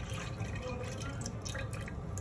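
Milk pouring from a carton into a metal saucepan, splashing into the milk already in the pan. The stream thins to a trickle near the end.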